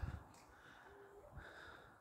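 Near silence: faint outdoor background, with a brief faint tone about a second in.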